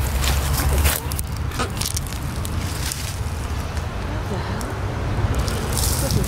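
Low rumble of wind buffeting the microphone, heaviest in the first second, with rustling and a few crunches as someone moves through leafy ground cover and handles plants; faint voices in the background.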